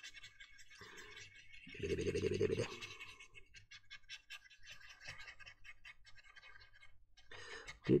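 Faint, scratchy ticking of a stiff paintbrush being dry-brushed over a plastic model tank hull. A short hummed note from a voice comes in about two seconds in.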